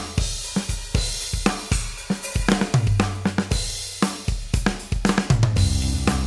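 Yamaha Genos arranger keyboard playing a style with only bass and drums: a sampled Revo drum kit groove of kick, snare, hi-hat and cymbals under held bass notes. Near the end, fuller sustained accompaniment comes in.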